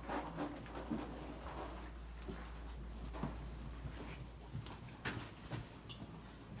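Quiet stall sounds: soft rustling and small knocks, with two brief high squeaks about three and four seconds in.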